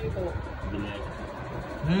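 A low steady rumble, with faint voices in the background early on.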